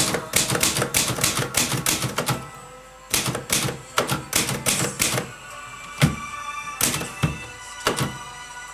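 Vintage manual typewriter keys striking the paper in quick runs of clicks, pausing briefly a little after two seconds, then sparser strokes near the end. Background music plays underneath.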